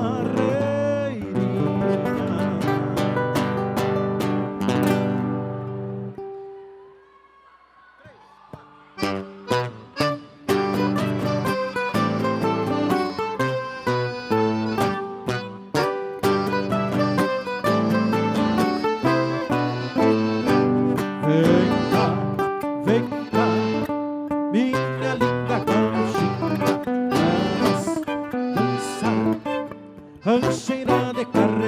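Live gaúcho folk band playing dance music: strummed acoustic guitar and violin with singing. The music fades out about six seconds in, leaving a brief quiet gap with one held note, and starts up again with a plucked, rhythmic passage about nine seconds in.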